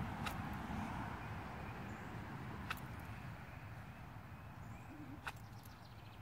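Quiet outdoor ambience with a low, steady hiss and three faint clicks spread across a few seconds, as a wooden onion-planting jig is pressed into loose tilled soil and moved along the row.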